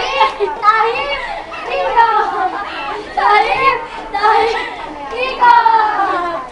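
A group of teenage girls chanting and shouting together, with laughter mixed in, in a dance rehearsal; the same short chanted phrase comes round again near the end.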